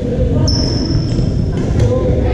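Sharp hits of a ball during a racket-sport rally on a hardwood gym court, the loudest near the end, ringing in a large echoing hall. A high squeal, most likely a sneaker squeaking on the floor, starts about half a second in and lasts about a second, over a steady low rumble.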